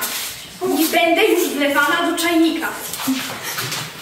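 A child's wordless, whining vocal sounds, wavering in pitch, lasting about two seconds from about half a second in.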